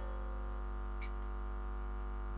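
Steady electrical mains hum from a public-address system, a low buzz with even overtones, with one faint short tick about a second in.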